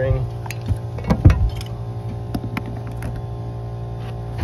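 A few light knocks of a tool and lumber being set against a wooden 2x4 wall plate, the loudest about a second in, over a steady background machine hum.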